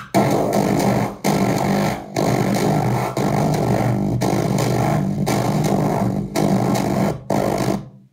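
Circuit-bent talking toy putting out harsh, distorted electronic noise over a steady low buzzing drone. The noise cuts out briefly about once a second and stops just before the end.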